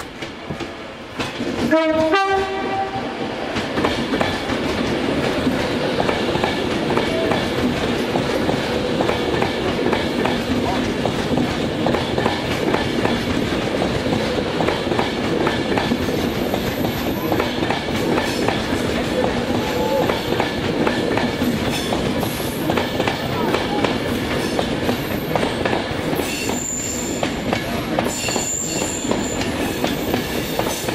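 Class 390 Pendolino electric express train sounds a short two-tone horn about two seconds in, then passes close at speed with a loud, steady rush of wheels on rail. Thin, high squeals come in near the end.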